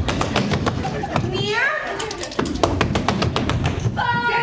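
Rapid, sharp percussive claps, several a second, over voices and music, with one upward-gliding voice about a second and a half in.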